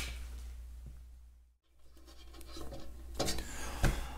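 Faint scraping and rubbing of small parts being handled, with a few light clicks near the end.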